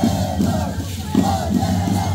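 Live music for the Shacshas dance, with a steady beat of about three strokes a second, mixed with the dancers' group shouting. The seed-pod shacshas rattles tied to the dancers' legs shake with their steps.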